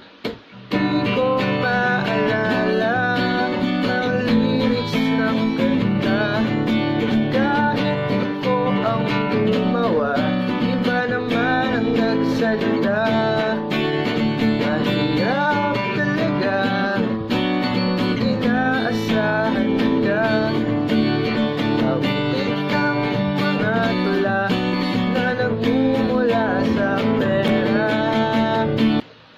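Acoustic guitar strummed in a steady down-up pattern through the chords G, B minor, A minor and D, starting about a second in.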